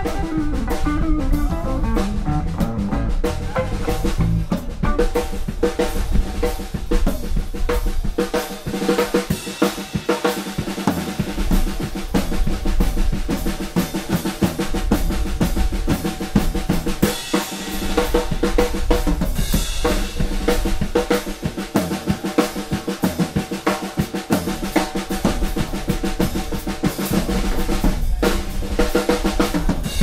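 Live blues band playing an instrumental passage, the drum kit loudest, with snare and bass drum hits driving over electric guitar and bass.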